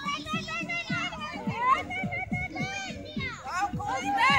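Young children shouting and squealing excitedly as they play, with music with a steady beat playing underneath.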